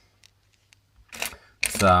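A short pause with a few faint clicks from small electronic components being handled, and a brief hiss about a second in; a man's voice starts near the end.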